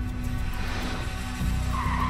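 Vehicle tyres skidding in an emergency swerve, a hiss building and breaking into a shrill screech near the end, over dramatic music.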